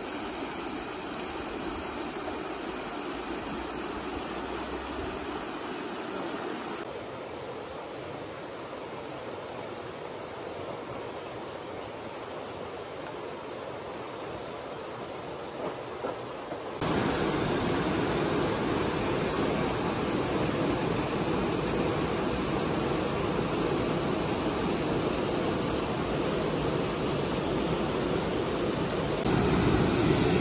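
Clear mountain river (the Radovna in Vintgar Gorge) rushing over stones: a steady wash of water, stepping up abruptly to a louder, fuller rush about two-thirds of the way through.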